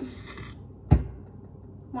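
A short rustle, then a single hard thump about a second in, as of something knocked or set down on the kitchen counter beside a stainless steel mixing bowl.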